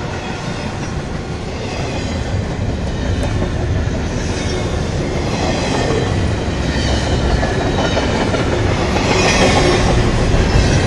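Double-stack intermodal freight train's well cars rolling past close by: a continuous rumble of steel wheels on the rails, growing slightly louder toward the end.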